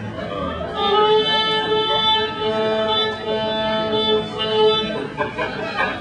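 Fiddle bowing long, steady held notes, with a second, higher note sounding alongside the first for a couple of seconds. The held notes stop about five seconds in.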